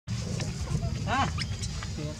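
Macaque giving one short rising-and-falling call about a second in, over a steady low rumble.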